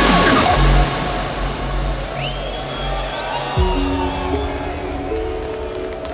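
Electronic dance music from a hardstyle DJ set. The heavy beat drops out about a second in, leaving held synth tones with sliding, rising effects, and a deep held bass chord comes in past the halfway point.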